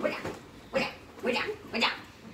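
Children's short yelps and squeals during a pillow fight, four quick cries in two seconds.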